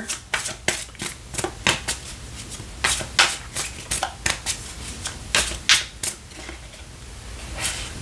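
A deck of tarot cards being shuffled by hand: a run of quick, irregular card slaps and flicks that thins out near the end.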